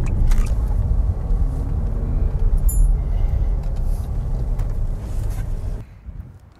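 Car driving, heard from inside the cabin: a steady low engine and road rumble, cut off abruptly just before the end.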